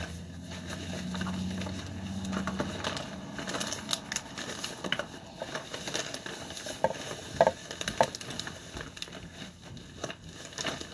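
Rummaging through a container of makeup: plastic compacts and cases clicking and knocking against each other, with rustling. The loudest knocks come about seven to eight seconds in.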